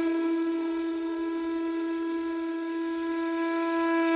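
A flute holds one long, steady note with a full set of overtones, swelling slightly louder near the end.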